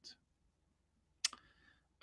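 A single short, sharp click a little over a second in, against near silence.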